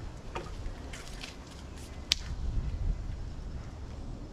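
Tools handled on a wooden work table: a few light clicks and one sharp click about two seconds in, as a steel tape measure is brought out to measure the stone, over a low steady rumble.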